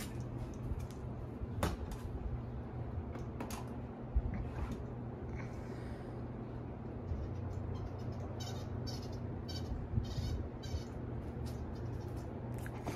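Ceiling fan running on high: a steady low motor hum, with a few scattered clicks and a short run of light rattles near the end.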